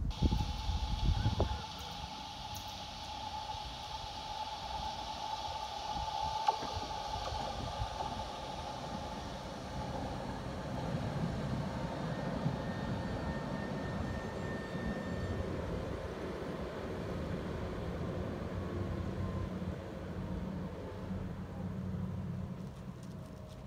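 Tatra T3 tram approaching along the track, its low running rumble growing from about halfway through as it draws near. A steady high whine runs through the first half, and there is a short burst of wind on the microphone at the start.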